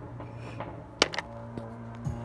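A stone set down on a pile of rocks: one sharp clack about a second in, followed by a couple of lighter clicks, over a steady low hum.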